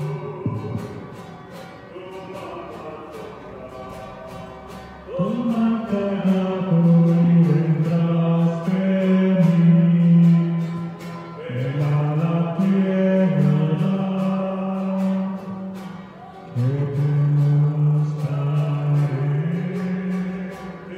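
A hymn sung over instrumental accompaniment with a steady beat, in phrases of long held notes; softer for the first few seconds, with new sung phrases entering about five, eleven and sixteen seconds in. It is typical of the entrance hymn that opens a Mass.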